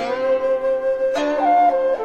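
Background instrumental music: a flute playing a slow melody of long held notes, with the pitch changing a few times in the second half.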